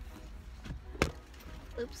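One sharp knock about a second in as a person climbs into a car seat, over a low steady rumble.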